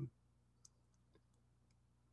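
Near silence: room tone with a low hum and a few faint, brief clicks spread through the pause.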